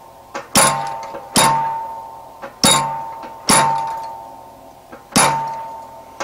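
Treadle hammer striking a small hand-held chisel on a forged steel leaf, cutting its cross veins. Five light blows land about a second apart, unevenly spaced, and each rings out with a metallic tone that fades before the next.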